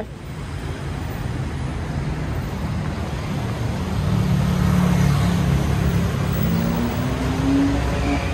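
Steady city street noise with a motor vehicle's engine hum, its pitch rising toward the end.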